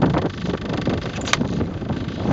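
Wind buffeting the microphone and choppy water around an inflatable coach boat, over the steady hum of its outboard engine. A single sharp click comes a little past halfway.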